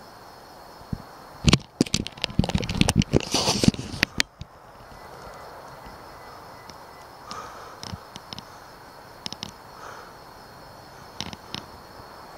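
Crickets chirping steadily in the background. About a second and a half in, a burst of rapid, loud clicks and crackles lasts for nearly three seconds, and a few lighter clicks follow later.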